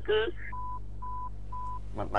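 Three short electronic beeps of one steady pitch, each about a quarter second long and evenly spaced half a second apart, over a low steady hum.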